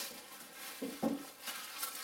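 Aluminium foil rustling and crinkling as it is handled, with a short murmur from a man about a second in.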